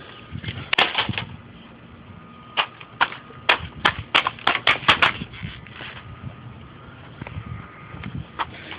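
Pieces of a smashed computer being handled: sharp clicks and knocks of broken plastic and metal parts. A short cluster comes about a second in, then about ten quick clicks over the next two and a half seconds.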